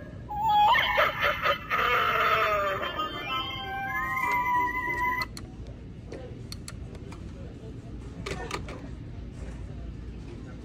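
Halloween animated telephone prop with a skull rotary dial playing its built-in sound effects through its small speaker: a wavering, voice-like spooky sound, then warbling electronic tones that stop about five seconds in. After that only a few faint clicks as the plastic handset is lifted.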